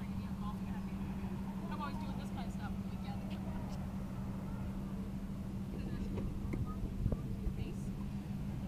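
Outdoor background: a steady low hum with rumble beneath it, faint distant voices, and a few soft knocks near the end.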